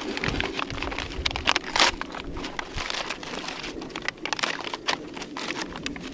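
Copy paper rustling and crinkling as a bullet-riddled ream and its paper wrapper are pulled apart by hand, in a run of irregular crackles.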